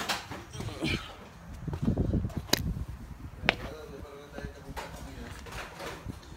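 Handling noise of a hand-held phone being moved about: low rubbing and rumbling on the microphone, two sharp clicks about a second apart, and faint voices in the background.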